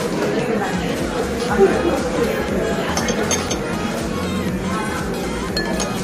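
Metal ladle clinking against a ceramic bowl while soup is ladled out: a few light clinks about three seconds in and again near the end.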